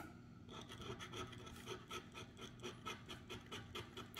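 Plastic scratcher coin scraping the coating off a scratch-off lottery ticket in quick, faint, repeated strokes, several a second, starting about half a second in, to uncover the prize amount under a matched number.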